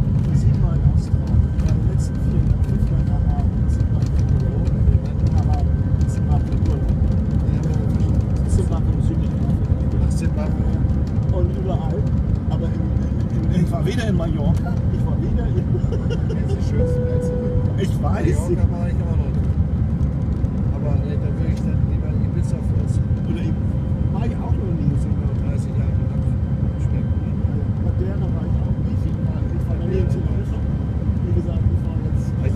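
Airliner cabin noise during takeoff: a loud, steady, low rumble from the engines at takeoff power, carrying on through the roll and the climb-out.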